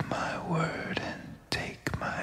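A whispered voice: short breathy phrases, each starting with a sharp consonant click, with little music under it.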